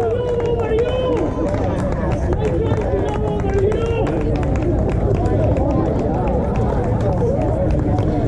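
Pickleball paddles popping against balls on several outdoor courts, many sharp ticks at uneven intervals, over players' voices and a steady low rumble.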